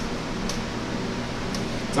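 Steady low hum and hiss of background machine noise, with a faint click about half a second in.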